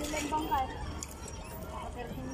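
Indistinct voices of people talking, brief and mostly in the first half second, over a low steady rumble.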